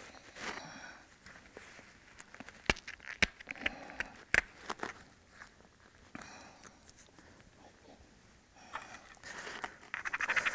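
Pressure flaking on a flint core with a short, padded pressure flaker: a few sharp clicks of stone on stone and scraping at the core's edge, mixed with the rustle of the leather hand pad, with a quieter stretch past the middle.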